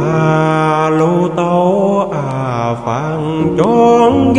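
A singer's voice enters over the backing track in long, held, wavering notes, sliding down near the middle, with a new phrase starting shortly before the end.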